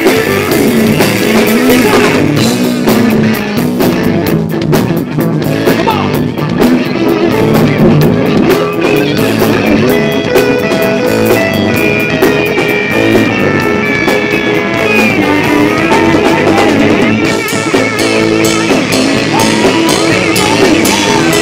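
Live blues-rock band playing an instrumental passage: electric guitar to the fore, with wavering, bent lead notes over bass guitar and drum kit.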